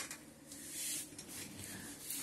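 Faint rubbing and rustling handling noise, with a short click right at the start and a soft swell of hiss around the middle.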